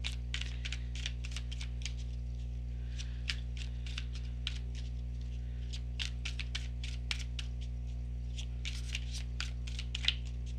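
A tarot deck being overhand-shuffled by hand: an irregular run of light, quick card clicks and flicks, several a second, over a steady low electrical hum.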